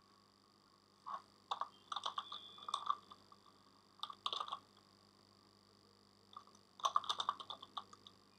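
Computer keyboard typing in short bursts of key clicks, with pauses of a second or two between the bursts.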